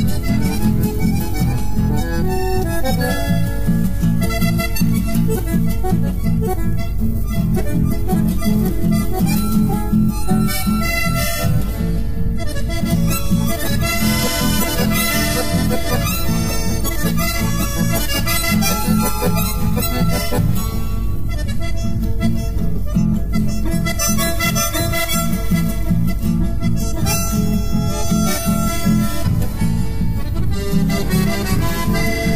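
Instrumental chamamé: accordion and bandoneón playing the melody together over a steady, rhythmic guitar accompaniment.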